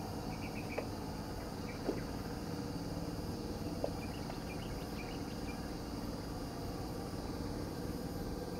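Steady outdoor background of insects buzzing, with a few faint short bird chirps and one or two tiny clicks.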